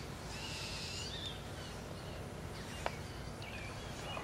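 Quiet background ambience with faint, high chirping sounds in the first second and again later, and a single soft click near the end.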